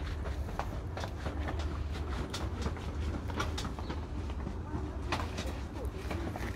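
Outdoor background with a steady low rumble and scattered soft clicks and rustles, the sound of a handheld phone being moved about between shots.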